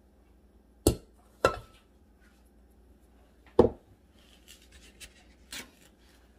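Three sharp knocks of kitchen things handled on a table: one about a second in, another half a second later with a short ring, and a third past three and a half seconds, then a few faint taps near the end. They come from a measuring cup and a stainless steel mixing bowl being picked up and set down.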